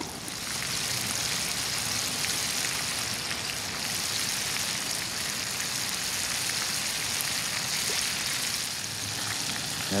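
Breaded perch fillets deep-frying in hot vegetable oil in a cast iron Dutch oven: a steady hissing sizzle with fine crackles throughout.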